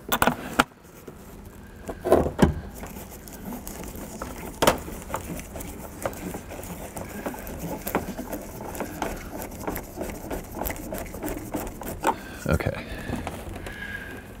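Hand screwdriver driving screws through a flip-down DVD monitor's mounting bracket into a minivan headliner: scattered small clicks, scrapes and light knocks, with one sharper click about five seconds in.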